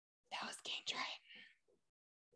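A person whispering briefly and quietly, a breathy run of unvoiced syllables lasting about a second and a half.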